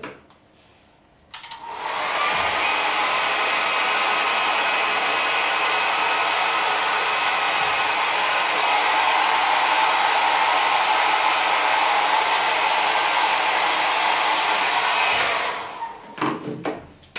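Handheld hair dryer switched on about a second in and running steadily: a rush of blown air with a faint motor whine, switched off and winding down near the end.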